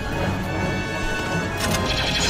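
Film score music with steady held tones, and a brief sharp noise near the end.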